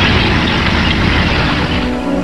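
Sound effect of a tracked snow vehicle's engine running as it drives past, a steady rumbling noise that cuts off suddenly near the end.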